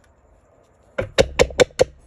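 Five quick, sharp knocks in a steady run, about five a second, starting about a second in and lasting just under a second.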